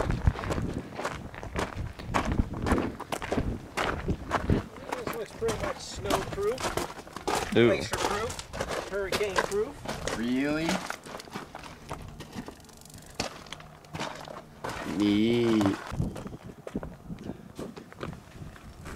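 Footsteps on loose rock and gravel, a quick run of short scuffs through roughly the first half, then thinning out. Brief snatches of voice come in between.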